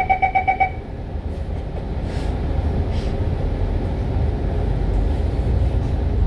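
MAN A95 double-decker bus running along the road, heard from inside: a steady low engine and drivetrain rumble with road noise, growing heavier near the end. A rapid electronic beeping, about ten pips a second, sounds in the first second and stops.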